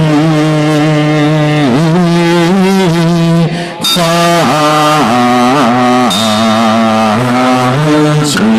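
Slow, melodic Buddhist chanting of Amitabha Buddha's name (nianfo), the voices holding long, slightly wavering notes and gliding from pitch to pitch, with a short breath pause a little under four seconds in.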